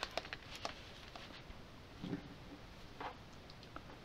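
Over-ear headphones being unfolded and handled: scattered faint clicks and soft rustles, a dozen or so small ticks spread through the few seconds.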